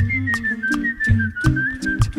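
All-vocal a cappella music: a whistled melody wanders around a high pitch. Beneath it a voice sings a stepping bass line, and mouth percussion clicks out a steady beat of a little under three hits a second.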